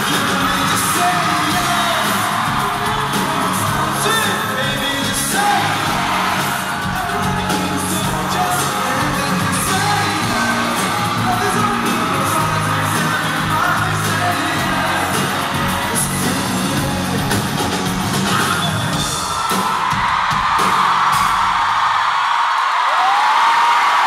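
Live band with a singer playing loud pop-rock, heard from among the audience, with fans whooping and yelling. About twenty seconds in, the instruments stop and the crowd screams and cheers.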